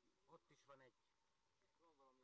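Near silence, with faint, distant voices talking in short snatches.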